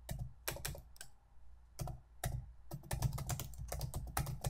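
Computer keyboard being typed on: a few spaced keystrokes, then a quicker run of keys in the last second or so.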